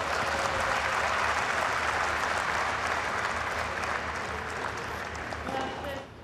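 Tennis crowd applauding, a dense clapping that holds steady and then gradually dies down toward the end.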